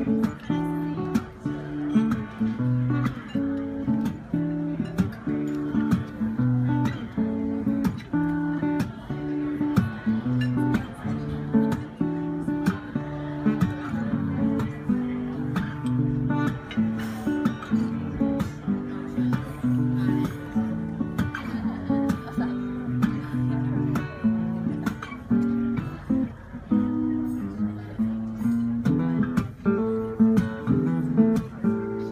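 Solo acoustic guitar played live as an instrumental, slap-style: steady picked and strummed notes with sharp percussive hits on the strings and body.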